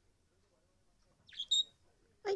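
A budgerigar gives a short two-note chirp, "chu-pi!", about a second and a half in: a quick high note followed at once by a sharper, clear whistle.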